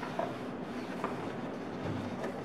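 Paper pages of a large book being handled and turned, with a couple of light ticks and a soft swell near the end, over a steady low rumble.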